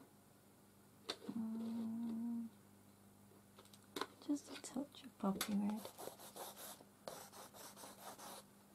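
A woman briefly hums a steady note, says a word, then light scratching on paper follows near the end as a coloured pencil is drawn across the page.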